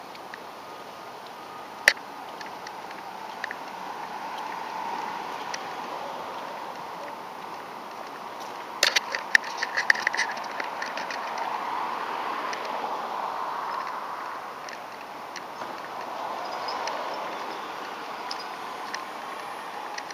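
Steady rushing noise of a camera moving down a street, wind and road noise on the microphone. There is a sharp click about two seconds in and a short cluster of rattling clicks about nine to ten seconds in.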